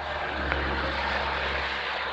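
Steady rushing noise with a low hum underneath, picked up over a video-call microphone.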